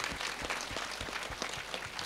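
Audience applauding: many hands clapping in a steady, fairly quiet patter.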